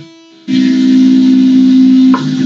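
Electric guitar: a soft pick click at the start, then about half a second in a loud chord is struck and held, ringing steadily to the end.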